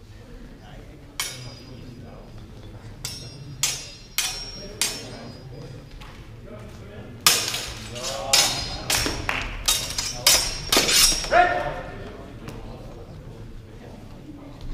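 Steel training swords clashing in a fencing bout: a few single sharp clinks in the first five seconds, then a rapid flurry of ringing blade-on-blade clashes from about seven to eleven and a half seconds in.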